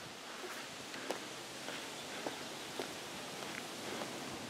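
Faint footsteps of a person walking, a soft tap about every half second, over a steady outdoor hiss.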